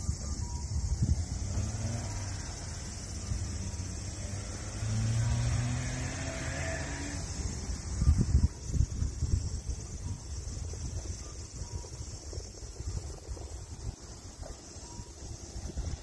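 Outdoor parking-lot ambience: a steady high-pitched insect chorus, low wind and handling rumble on the microphone, and a vehicle engine whose pitch slowly rises through the middle.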